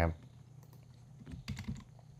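A few faint, sharp clicks of computer keyboard keys, spread over about a second with gaps between them.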